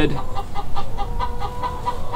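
Chickens clucking in a quick run of short, evenly spaced clucks, about five a second.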